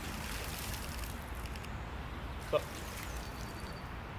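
Stream water flung up by hand and spattering back down onto the water's surface, strongest in the first second, then the steady wash of the shallow stream.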